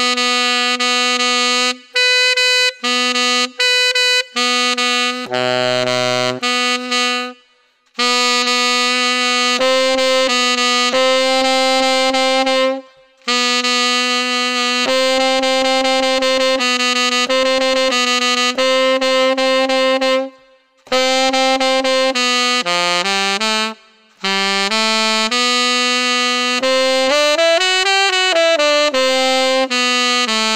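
Yanagisawa TW01 tenor saxophone played through a Guardala Studio mouthpiece: long held notes in the middle register, the middle C sharp and D checked for tuning, broken by short breaths. One low note comes about six seconds in, and a quick pitch bend up and down comes near the end.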